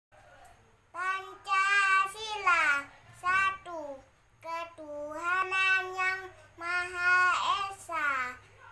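A young boy's voice reciting in a drawn-out, sing-song chant. It comes in several phrases from about a second in, each ending on a long held note, with short pauses between them.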